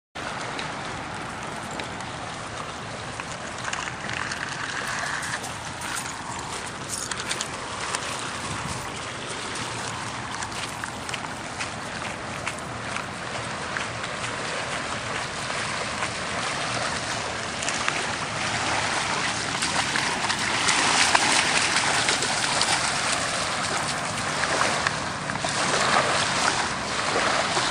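Small bay waves washing onto a shelly beach, with wind on the microphone and footsteps crunching on shells and gravel. It grows louder about twenty seconds in.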